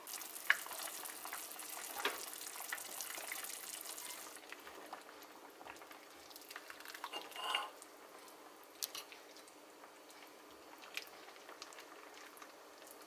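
Seaweed soup boiling in a pot, a crackling, bubbling hiss for the first four seconds. Then a ladle dips into the soup and pours it into a bowl, with a few light clinks of the ladle against the pot.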